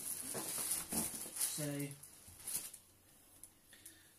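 Plastic-wrapped tent being handled in a cardboard box: plastic rustling in irregular bursts for the first two and a half seconds, with a brief vocal sound in the middle, then near quiet.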